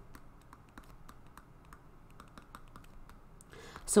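Light, irregular clicks and taps of a stylus on a drawing tablet as words are handwritten.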